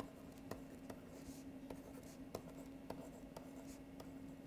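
Faint taps and scratches of a stylus writing on a pen tablet, with a light click about twice a second, over a steady low hum.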